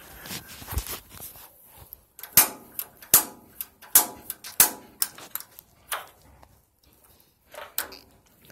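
Piezo spark igniter on a gas water heater's pilot control, pressed over and over while the pilot gas button is held down to light the pilot. It gives a string of sharp snapping clicks, irregularly about one every half second to second.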